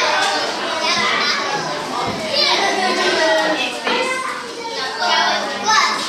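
Many young schoolchildren talking at once in a classroom, a steady overlapping babble of chatter with no single voice standing out.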